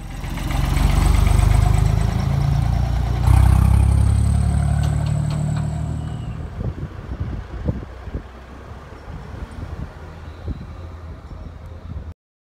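Tractor engine running close by, growing louder about three seconds in, then fading steadily as it draws away, with scattered light clicks and knocks as it fades.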